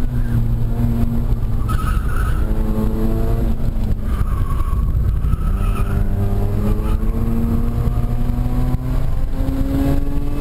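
2005 Mazda RX-8's Renesis twin-rotor rotary engine with an HKS aftermarket exhaust, heard from inside the cabin, revving up and dropping back several times as it is driven hard on track. Tyres squeal briefly twice in the corners.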